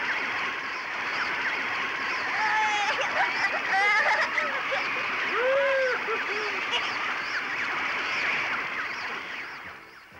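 Animated sound effect of a steady rush of churning liquid: blood pouring down from the pulmonary veins into the heart's left atrium. Short wordless cries from the characters rise and fall over it a few seconds in.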